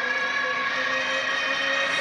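Dubstep breakdown: a sustained synth chord held with no drums or bass, a hiss rising in the top range near the end.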